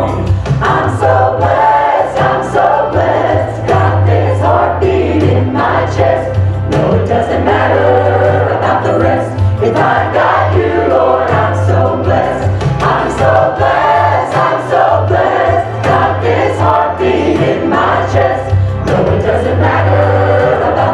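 Gospel choir of mixed voices singing, with a woman singing lead into a microphone, over a steady low bass.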